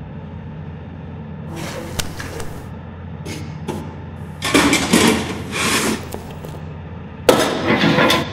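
A metal cantilever toolbox being opened by a gloved hand: a series of clanks and rattles from the steel lid and trays, loudest about halfway through and again near the end, over a low steady hum.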